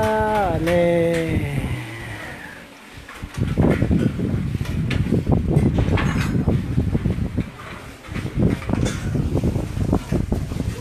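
A voice holds a long sung note that falls away about a second and a half in. From about three and a half seconds in, a loud, rough din of many boys talking and eating fills the rest, broken by frequent short knocks.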